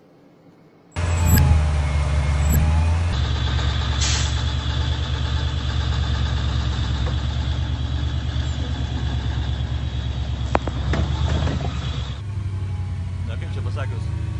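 Rally vehicle engine running steadily, starting abruptly about a second in, with a single sharp knock late on.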